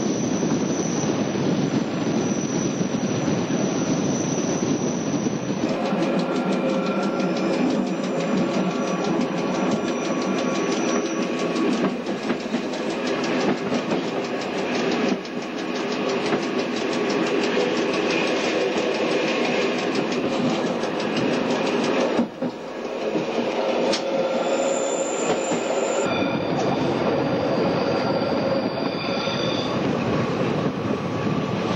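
Stanga-Tibb ALe 09 electric railcar running on the line, heard on board: a continuous noise of the running gear with rail clicks and steady whining tones. The sound changes abruptly about six seconds in and again several times later.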